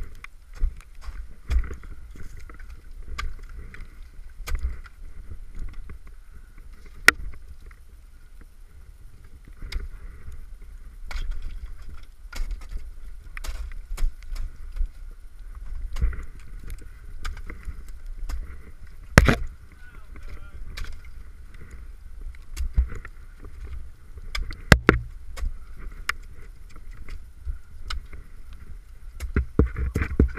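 Ice axe picks and crampons striking soft wet ice at irregular intervals, a sharp thunk every second or two, over the climber's rustling movement.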